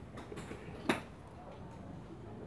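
Quiet background with one sharp click about a second in and a fainter one just before it.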